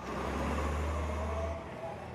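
Heavy truck rumble with a rushing noise. The deep rumble drops away about a second and a half in, and the rushing fades out after it.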